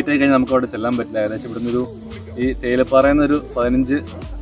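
A man talking, with a steady high-pitched insect drone, like crickets, running underneath.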